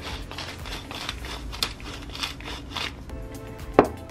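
A pepper mill grinding black pepper in a run of short, gritty crunches, with background music playing.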